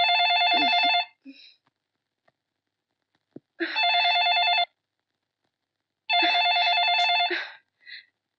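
Corded landline telephone ringing with an electronic warbling trill: three rings of about a second each, a few seconds apart.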